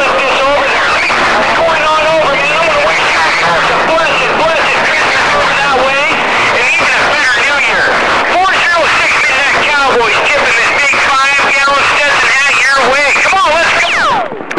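CB radio receiver playing garbled, overlapping voices from other stations over heavy static, none of it clearly intelligible. Right at the end a quick falling tone sounds as the signal cuts off.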